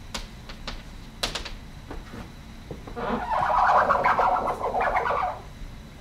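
Chalk writing on a blackboard: a few sharp taps of the chalk against the board, then a louder stretch of scratching starting about halfway through that stops about two seconds later.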